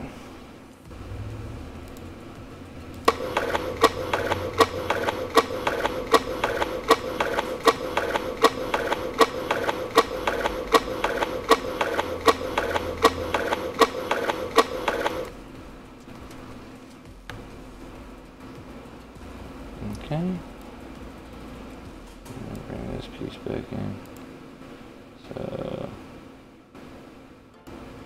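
Playback of an edited skateboarding clip that has been copied and reversed back and forth into a loop, so its sound repeats: a steady hum with sharp clicks about twice a second for about twelve seconds, then it stops.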